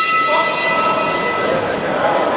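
Boxing ring bell ringing on after a single strike, its steady tone slowly fading away over the hall's crowd noise: the bell that starts the round.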